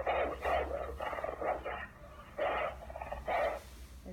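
Recorded wolf barking and growling in about five short, rough bursts over three and a half seconds, played back through a tablet's speaker.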